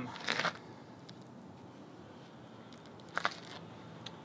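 Quiet outdoor background with a faint steady low hum, broken by one short scuffing noise about a third of a second in.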